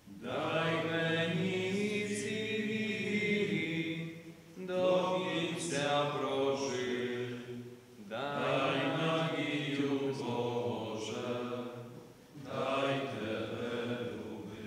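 A group of voices singing a slow church hymn or chant, in long held phrases of about four seconds with short breaks for breath between them.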